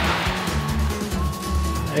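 Background music with steady bass notes, mixed with a classic rally car passing close on a wet road. The rush of tyres and engine is strongest at first and fades as the car moves away.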